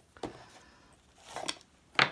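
Faint handling noises as shoe-shine brushes and a polish tin are moved about on a table: a light click, a brief scrape a little past the middle, and a sharp click at the end.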